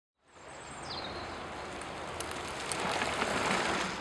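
Outdoor background noise, a steady hiss, fading in and slowly growing louder, with a brief high bird chirp about a second in.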